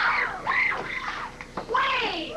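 High-pitched shouted calls from young softball players, each call rising and falling in pitch, with a short lull about a second and a half in before another call starts.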